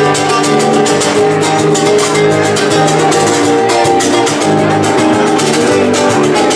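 Live Latin rumba-style band music: a nylon-string electro-acoustic guitar strummed in a fast, steady rhythm, with bass guitar and drums.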